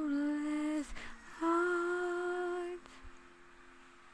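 A young woman's unaccompanied voice holding two long notes, the second a little higher, at the close of a song. From just before three seconds only faint room hiss is left.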